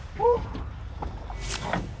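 A gaffed bluefin tuna being hauled aboard over the boat's rail: a brief grunt of effort near the start over a low rumble, then a sudden sharp noise about one and a half seconds in as the fish comes over.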